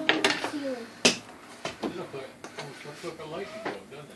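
A couple of sharp knocks of hard objects handled on a wooden workbench, the loudest about a second in, with low voices talking.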